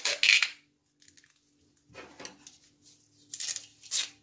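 Clear adhesive tape being pulled off and pressed around a rubber glove on the neck of a glass carboy, with crackling and a few sharp clicks. Scissors snip the tape near the end. This is the sealing of a glove airlock on a fermenting bottle.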